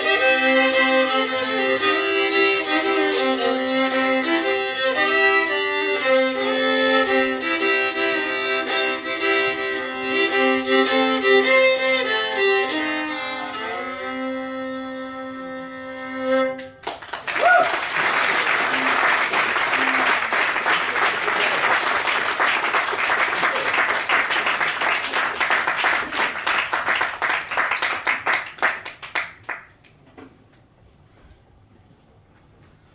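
Two fiddles playing a Cajun twin-fiddle tune over a sustained low drone note, ending on a long held chord about sixteen seconds in. Audience applause follows, dying away near the end.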